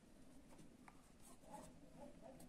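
Faint scratching of a felt-tip marker writing on a paper textbook page, in short strokes as a word is written out.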